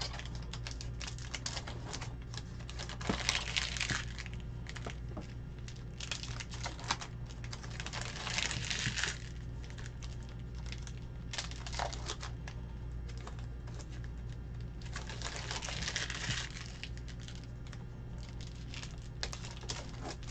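Foil-paper trading-card pack wrapper crinkling and tearing in three louder bursts, with quick small clicks of cardboard cards being flicked through in between. A low steady hum runs underneath.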